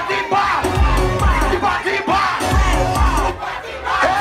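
Live soca performance on a loud sound system: a heavy repeating bass beat, with the performer's amplified voice and the crowd shouting and chanting along.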